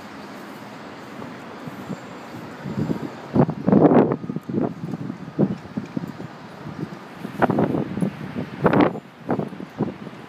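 Gusts of wind buffeting the microphone in two bouts, around four seconds in and again near the end, over a steady outdoor city hum.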